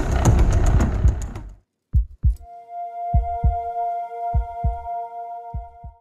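A heartbeat sound effect: pairs of low thumps, lub-dub, about every 1.2 s, over a steady, high electronic tone. Before it, about a second and a half of noisy background sound ends in a short silence.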